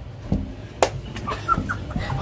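A few short clucks like a chicken's, with a sharp click a little under a second in.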